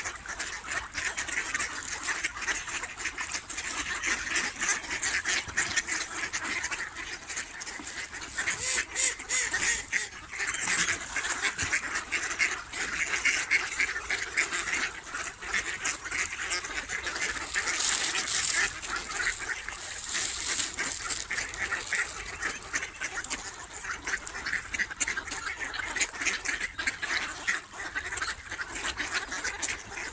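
A large flock of mallards on the water quacking and calling all at once, a dense, continuous din of overlapping voices.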